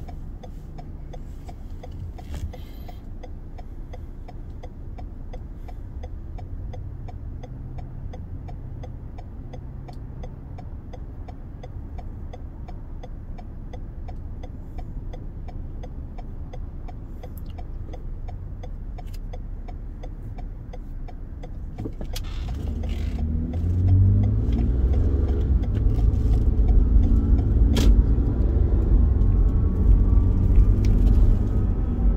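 A car's engine idles, heard from inside the cabin while the car sits stopped, with a steady fast ticking over it. About two-thirds of the way in, the engine gets louder and rises in pitch as the car pulls away and speeds up.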